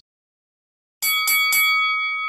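Boxing-ring bell struck three times in quick succession about a second in, then ringing on and slowly fading: the bell that opens a new round.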